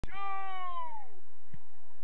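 A single long, high-pitched shout from a young player on the pitch, held about a second and dropping in pitch as it ends.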